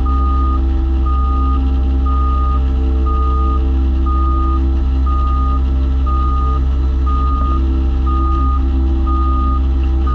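Ride-on compaction roller's engine running steadily while its reversing alarm beeps about once a second, each beep about half a second long: the roller is moving in reverse over the gravel base.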